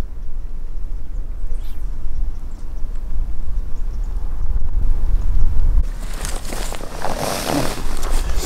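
Wind buffeting the microphone outdoors: a steady low rumble, with a louder rushing hiss over the last two seconds.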